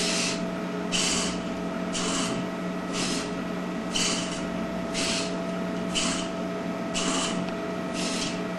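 Hobby RC servos moving a robot's mock-up eyelid flaps, whirring in short bursts about once a second as the flaps step to each new position. A steady hum runs underneath.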